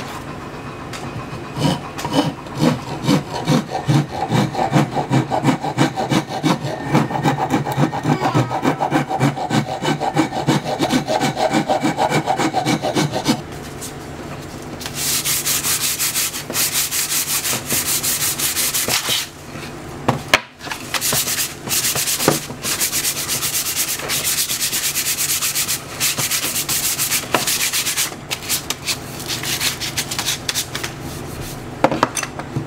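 Hand file rasping along a wooden mallet handle in steady back-and-forth strokes, about two a second. About halfway through it gives way to hand sanding of the handle, a brighter, quicker hissing rub.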